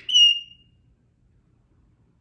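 African grey parrot giving a single short, high whistle, about half a second long, at a steady pitch.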